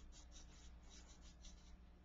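Faint scratching of a felt-tip marker across flip-chart paper, a quick run of short strokes several times a second.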